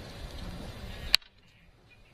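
A single sharp click as craft tools are handled, a little over a second in, against faint room noise that then drops away.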